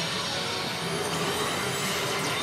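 Steady, dense din of a pachinko parlor: rows of pachinko machines with their steel balls rattling and electronic effects running together, with no break.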